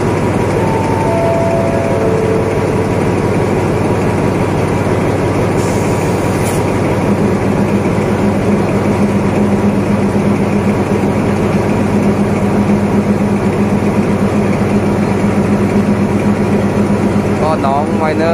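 Alsthom 4401 diesel-electric locomotive idling close by, a loud steady engine note whose low hum grows stronger from about seven seconds in. Near the start, a descending four-note chime sounds over it.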